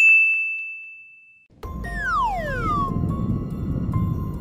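A bright, bell-like chime rings once and fades over about a second and a half. Then a low rumbling noise starts and carries on, with a whistle sliding down in pitch about two seconds in.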